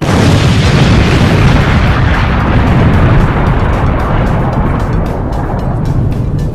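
Loud boom-like sound effect of a subscribe outro animation, with music: a noisy rumble that starts abruptly and fades slowly over several seconds.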